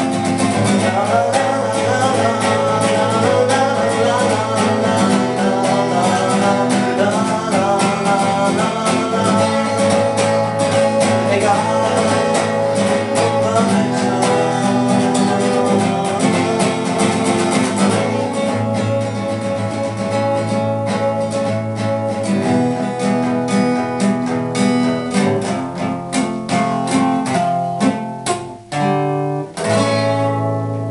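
Acoustic guitar being strummed steadily. The strokes thin out about two-thirds of the way through, with a short break and one strong chord struck near the end.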